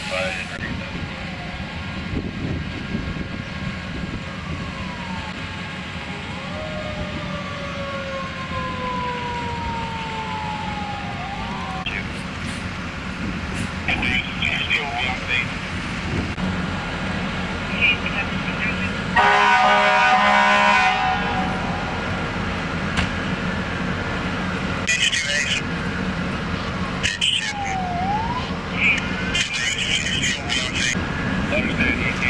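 Emergency vehicle sirens wailing and winding up and down, with a loud horn blast lasting about two seconds past the middle.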